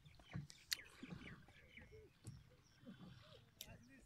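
Faint, distant voices of people talking outdoors, with two sharp clicks.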